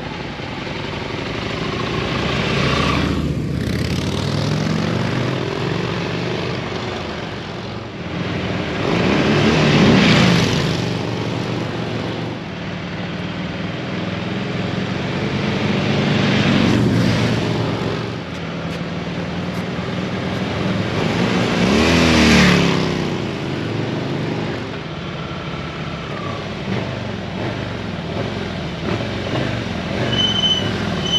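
Harley-Davidson V-twin motorcycles, a Sportster 1200 and a touring Harley, running as they ride. The engine sound swells and fades about four times.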